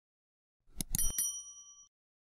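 Subscribe-button animation sound effect: a few quick clicks about three-quarters of a second in, then a bright bell ding that rings on for under a second and stops.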